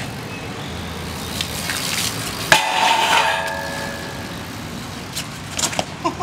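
BMX bike riding on wet concrete over a steady rushing background of wind and traffic. A sharp click about two and a half seconds in is followed by a pitched tone of about a second, and there are a few knocks near the end.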